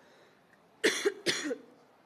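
Two short coughs close to the microphone, about a second in.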